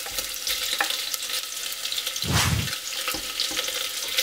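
Food sizzling and crackling in hot oil in a pan, a dense, steady crackle with one brief louder burst a little past halfway.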